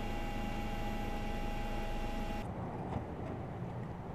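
Steady engine and rotor noise from a helicopter, with several high whining tones over a hiss. About two and a half seconds in it cuts abruptly to a duller, lower outdoor rumble with a few faint ticks.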